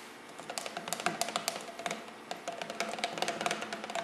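A rod stirring sodium silicate and talcum powder into a paste in a cut-down plastic soda bottle, with quick irregular taps and clicks of the rod against the bottle's sides starting about half a second in.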